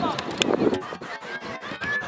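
Voices shouting across an outdoor football pitch, with a few short knocks.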